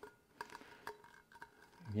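Heat tape being drawn out and laid over the paper wrap on a sublimation tumbler: a few faint clicks and crackles of the tape, which sounds tighter than it is actually being pulled.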